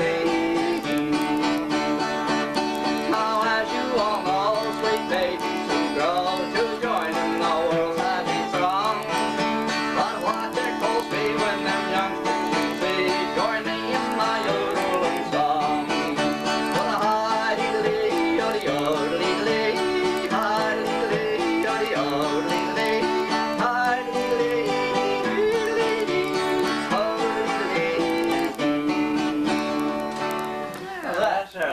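Two acoustic guitars played together, continuously and at an even level.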